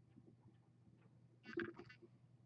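Mostly near silence, with a brief cluster of faint clicks about one and a half seconds in.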